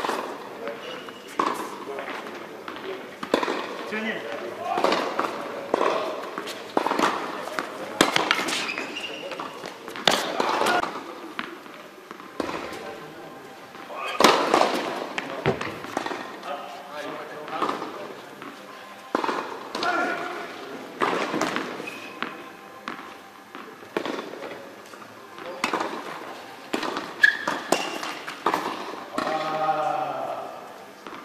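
Tennis balls being struck by racquets and bouncing on an indoor hard court: a series of sharp hits, irregularly spaced a second or two apart, each echoing briefly in a large hall, with voices in the background.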